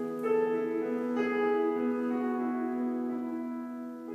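Grand piano playing a slow, sustained introduction: notes struck about a quarter second and just over a second in and left to ring, the sound slowly fading toward the end.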